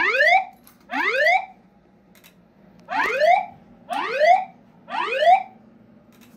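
Fire alarm speaker-strobe (System Sensor SpectrAlert Advance) sounding a voice-evacuation whoop tone. Each whoop is a rising sweep of about half a second. Two whoops come a second apart, then a pause of about a second and a half, then three more, in the gap between repeats of the recorded evacuation message.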